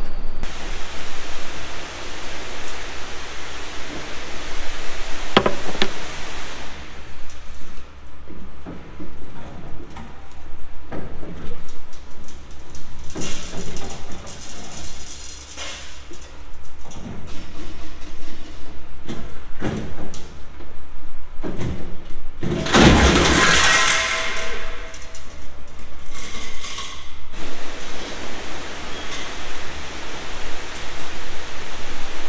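Irregular metal clanks and knocks from pulling a worn, stretched feeder house chain out of a combine, over a steady low hum. A loud rush of noise comes about three-quarters of the way through.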